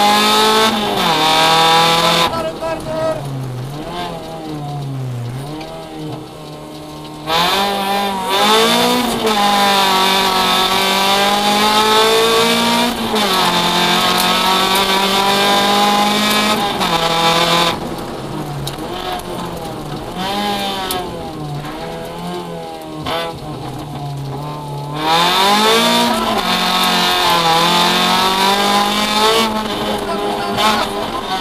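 Rally car engine heard from inside the cabin, revving hard and rising in pitch through the gears. Two stretches, about 2 to 7 s and 18 to 25 s in, are quieter with a lower, wavering engine note as the driver lifts and brakes.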